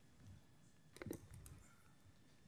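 Near silence, room tone, broken by a few faint clicks and a soft knock about a second in.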